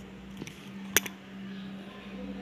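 A single sharp click about a second in, with a fainter tick just before it, over a steady low hum.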